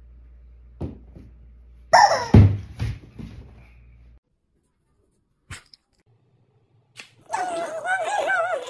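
Rubber chicken toy squeezed, giving one loud squawk about two seconds in that falls in pitch, followed by a few faint knocks. A wavering, voice-like sound starts near the end.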